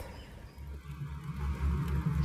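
A low, steady outdoor rumble that comes in about half a second in, with nothing above it.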